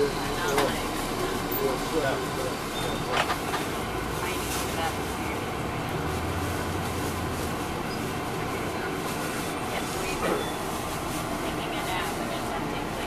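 Cabin noise inside a moving MCI D4000 coach: its Detroit Diesel Series 60 engine running under a steady hiss of road and body noise, with a low hum swelling briefly around the middle. Indistinct voices come and go over it.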